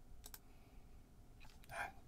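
A computer mouse double-click, followed by a few fainter clicks, against a quiet room; a short breath or voice sound comes near the end.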